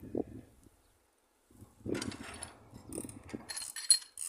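Hand tools working on metal pump fittings: irregular clicking, scraping and rattling in bursts after a short quiet gap, with a sharp metallic click near the end.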